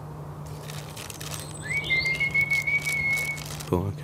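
A person whistling to call birds: one note that slides up and is then held steady for nearly two seconds, starting a little after halfway in.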